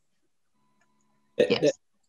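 Silence for over a second, then near the end a single short vocal sound from a person, about a third of a second long, like a clipped syllable.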